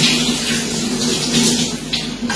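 Kitchen tap running onto a tied, turmeric-dyed cotton cloth held in a steel sink, rinsing out the excess dye. A steady hiss of water, with a steady low hum beneath.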